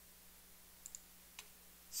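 Computer mouse clicks: a quick pair of clicks a little under a second in and a single click about half a second later, over a faint steady electrical hum.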